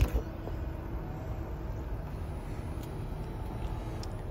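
Power liftgate of a Honda CR-V Touring opening: a short thump as the latch releases, then a faint steady hum from the liftgate motor as the hatch rises.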